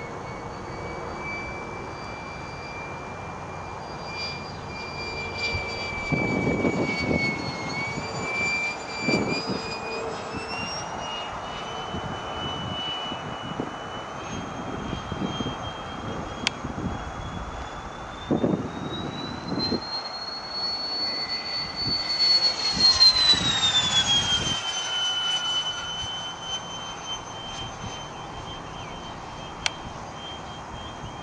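Tamjets TJ80SE electric ducted fan with a Neu 1509 motor, powering a HABU 32 model jet in flight, giving a high whine whose pitch slides up and down with the throttle. About two-thirds of the way through it is at its loudest and highest, then the whine drops sharply in pitch.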